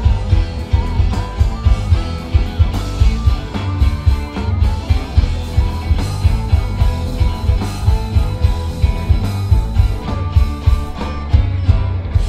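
Live rock band with electric guitars, bass guitar and drum kit playing a driving, steady beat. Right at the end the beat stops on a last hit and a chord rings on.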